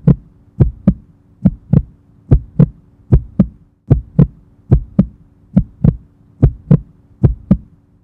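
Heartbeat sound effect: a steady double thump repeating about 70 times a minute, over a faint low steady hum.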